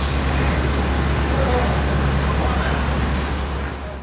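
Steady low rumble of motor traffic, fading out near the end.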